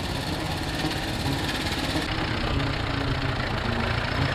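Curved-dash Oldsmobile's single-cylinder engine chugging unevenly as the car drives slowly past. About two seconds in the sound changes abruptly to another antique vehicle's engine running as it rolls by.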